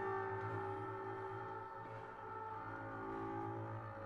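Contemporary chamber ensemble of bowed double bass, clarinet and viola holding sustained tones over a low, evenly pulsing drone.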